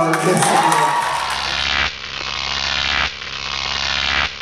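Live stage sound of a voice gliding in pitch over music, cut short less than two seconds in by a logo stinger sound effect. The stinger is a noisy, buzzing swell over a low hum that builds and drops off sharply about every second and a quarter.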